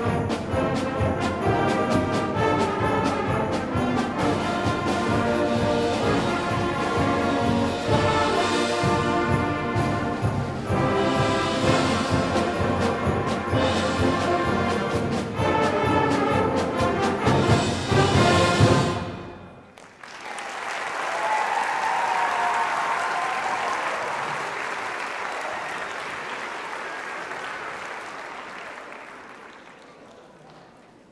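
School concert band of brass, woodwinds and percussion playing up to a loud final chord that cuts off about nineteen seconds in. Audience applause follows and fades out toward the end.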